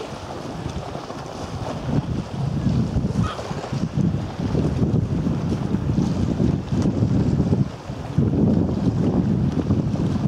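Wind buffeting the microphone in uneven gusts, a low rumble that eases briefly near the end.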